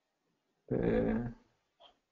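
Speech only: a man's voice drawing out a single Romanian word, 'pe', about halfway through.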